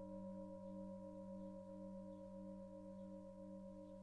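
Singing bowl ringing on steadily, several tones held together, one of them wavering in a slow, even pulse of about four beats a second.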